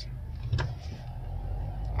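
Low, steady rumble of a car's engine and running gear heard from inside the cabin, with a single sharp click about half a second in; the rumble grows louder near the end as the car moves off.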